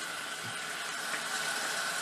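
Tap water from a sink faucet running steadily into the open plastic drum of a Frankford Arsenal rotary tumbler, filling it.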